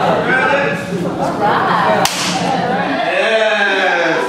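A single sharp smack of a hand about two seconds in, over the overlapping chatter of a room of people.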